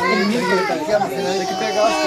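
Several adults and children talking at once: loud, overlapping party chatter with high children's voices among the adults'.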